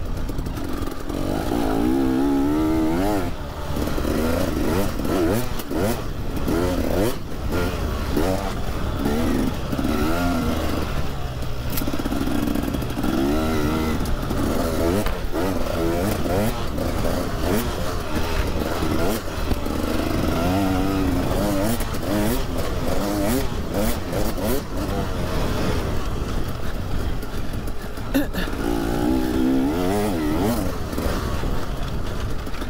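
KTM EXC 300 two-stroke enduro bike's single-cylinder engine under way, its pitch climbing and dropping over and over as the throttle is worked. Short knocks and clatter from the bike over rough ground run through it.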